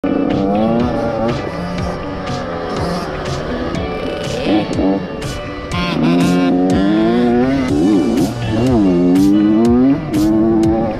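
Dirt bike engines revving while riding a motocross track, the pitch climbing and dropping repeatedly with throttle and gear changes, with the deepest dips and climbs near the end.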